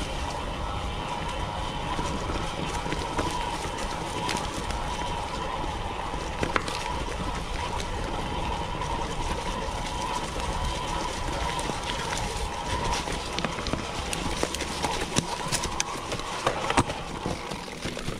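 Mountain bike rolling down a dirt forest singletrack: tyres on dirt and roots, with frequent clicks and rattles from the bike over bumps, more of them near the end, over a low wind rumble and a steady high buzz.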